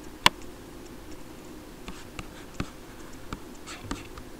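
Computer mouse clicks and handling on a desk, one sharp click near the start and several softer clicks and rubbing sounds after it, over a steady low hum.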